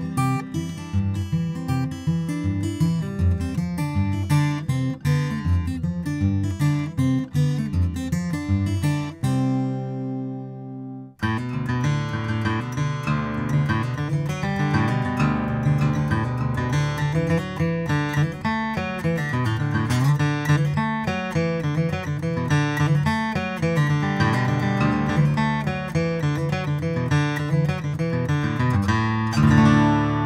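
Taylor 914ce First Edition acoustic guitar, with a Sitka spruce top and East Indian rosewood back and sides, played fingerstyle in a run of picked notes and chords. About nine seconds in a chord is left to ring and fade. The playing starts again abruptly just after eleven seconds and ends on a chord left ringing.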